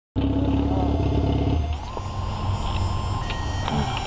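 Sportbike engine running steadily without revving. It is loudest for the first second and a half, then settles a little quieter.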